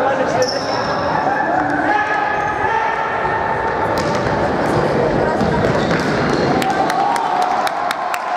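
Indoor futsal in a large echoing hall: players' voices calling out, with the ball's kicks and bounces on the wooden floor. Near the end, quick even handclaps start, about four a second.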